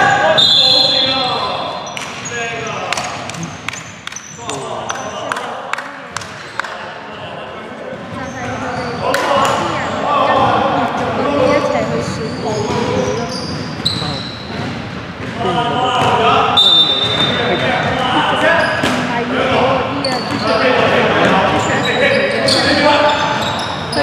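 Basketball game play in a large echoing gym: a basketball bouncing on a hardwood court with scattered impacts, and players calling out to each other, most of all in the second half.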